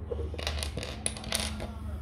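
Small plastic Lego bricks clicking and clattering as they are handled and picked up off a wooden table, a quick run of sharp clicks that is densest about a second in.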